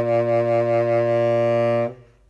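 Tenor saxophone holding one long, low closing note of the etude, which stops sharply near the end.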